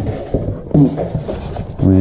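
A few light clicks and rustles from a styrofoam box liner and plastic wrap being handled, between short bits of speech.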